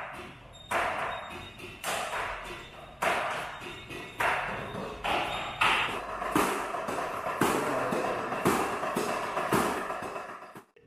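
Electronic drum kit being played: a steady beat of drum and cymbal hits, roughly one strong hit a second, each ringing on briefly.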